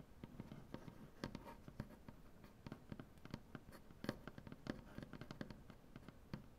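Fingernails and fingertips tapping and scratching on a wooden tabletop: quick, irregular light taps, several a second, mixed with short scratches, all soft.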